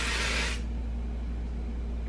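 One burst of aerosol hairspray hissing from the can onto a braid, stopping about half a second in. A low steady hum runs underneath.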